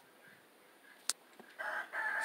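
A rooster starts crowing near the end, after a mostly quiet stretch broken by one short click.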